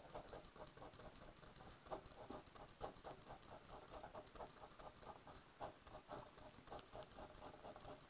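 Pencil drawing quick short strokes on notebook paper, hatching grid lines: a faint run of light scratches and taps, several a second.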